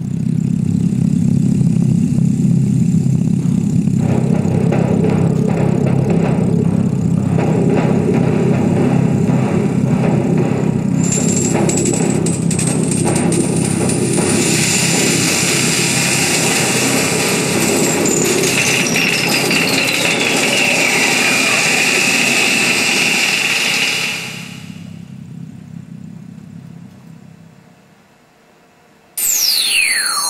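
Electroacoustic computer music over loudspeakers: a loud, dense low rumble with noisy layers. A high hiss comes in partway through, with a slow falling glide over it. The texture then cuts back and fades, and a fast, loud downward sweep comes in near the end.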